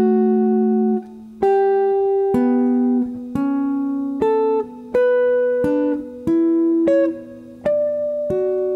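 Clean semi-hollow electric guitar playing sixth intervals as broken pairs, one string plucked and then the other, so the two notes ring together. The pairs alternate low-high and high-low and climb step by step up the C major scale.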